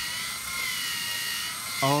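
LEGO EV3 Mindstorms motors running steadily, a high whine from the motors and gear train with a slight wavering in pitch as they drive the drawing arm around.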